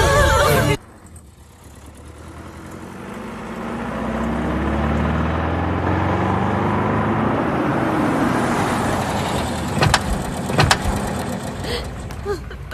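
A Hindustan Ambassador car drives up and comes to a stop. Its engine and tyre noise builds over the first few seconds and then eases off. Two sharp door clunks follow about ten seconds in.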